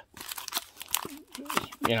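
Hard plastic graded-card slabs clicking and rattling against each other as a stack of them is handled in the hands, a run of sharp light clicks.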